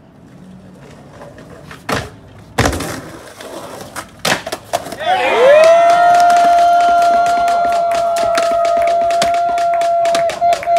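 Skateboard knocks and a hard slam on the ramp, three sharp hits in the first half. Then a long held whoop rises and holds one steady note for about five seconds, over scattered claps and clicks.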